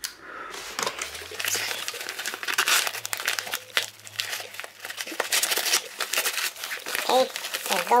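Yellow bubble-lined mailing envelope crinkling and tearing as it is worked open by hand, in a dense, continuous run of crackles. A voice starts near the end.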